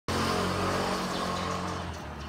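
A motor vehicle passing close by on a street: steady engine and road noise that slowly fades as it moves away.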